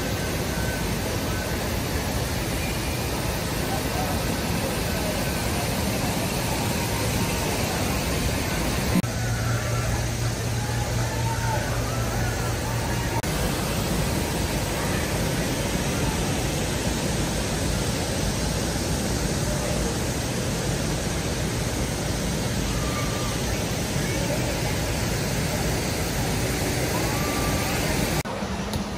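Steady rush of running water from water-park slides, with faint distant voices of people under it. A low hum joins for about four seconds in the middle.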